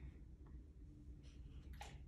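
Near silence: room tone with a faint low hum and two faint soft clicks, one about half a second in and one near the end.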